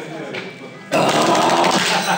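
A man's long, breathy 'ahh', exhaled hard through the mouth, starting suddenly about a second in: a reaction to the burn of a very hot chilli pepper he has just eaten.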